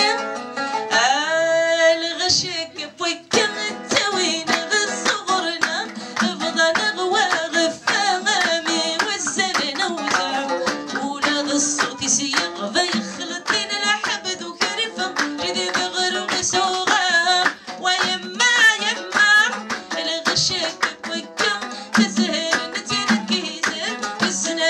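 Live music: a woman singing a melody in Kabyle while beating a hand drum, with plucked string accompaniment and a quick, steady stream of drum strokes.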